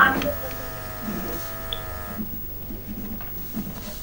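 A steady electrical buzz on a call-in telephone line fed into the studio, which cuts off abruptly about two seconds in as the caller's connection drops. Faint, indistinct voice sounds remain underneath.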